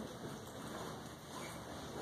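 Faint steady hiss of classroom room tone, with no distinct event.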